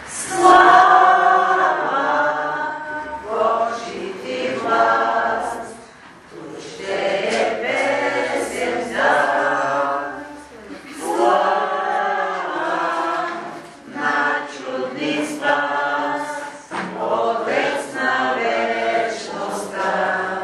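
A congregation singing a hymn together. The voices sing in phrases of a few seconds, with brief pauses between them.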